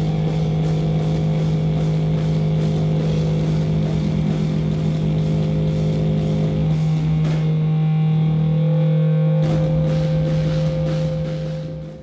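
Heavy rock band playing live: distorted guitars and bass hold a low droning note under drum and cymbal hits. The drums drop out for a moment after about seven seconds, come back with a few more crashes, and the sound fades out near the end.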